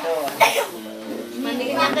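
People talking in Indonesian, with one short cough about half a second in.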